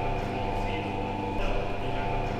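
Electric drive motor of a two-post car lift running with a steady hum while the up button is held, raising the car.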